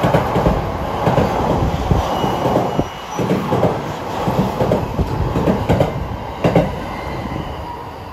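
JR East E657 series electric train passing through a station at speed, its wheels knocking in rapid, irregular clacks over the rail joints above a steady running rumble. The sound fades near the end.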